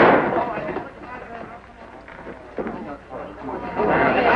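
A single gunshot, loud and sudden, dying away within about half a second, followed by low voices.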